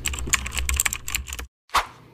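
Keyboard-typing sound effect: a rapid run of key clicks for about a second and a half that stops abruptly, followed by one short swish near the end.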